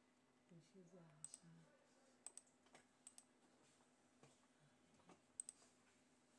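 Faint clicks of a computer pointing device's button, about ten of them, several in quick pairs, over a low steady hum. A faint voice murmurs briefly early on.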